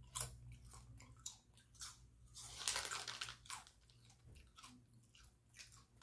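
Person biting and chewing Fritos corn chips, a run of short crisp crunches, with a louder, denser crackle lasting about a second midway through.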